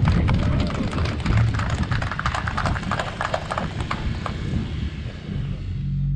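Crowd applauding outdoors, dense clapping over a low rumble, thinning out near the end.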